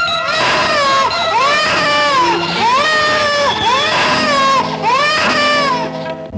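An infant crying in a film soundtrack: about five wails, each rising and falling and lasting about a second, one after another, over held notes of music.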